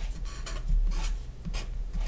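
Felt-tip marker writing on paper: a run of short strokes of the tip across the sheet as numbers and symbols are written, over a faint low hum.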